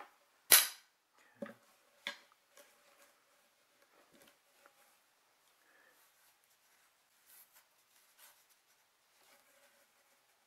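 One sharp, loud knock about half a second in, then two lighter knocks a second or so later, as flat-pack wooden dog-stair panels are set down and knocked together; faint small clicks and rustling follow as the pieces are handled.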